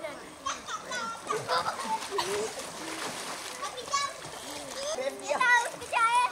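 Children splashing in a swimming pool, with high-pitched children's shouts and calls over the water, loudest near the end.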